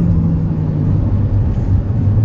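Steady engine hum and road noise inside the cabin of a moving car.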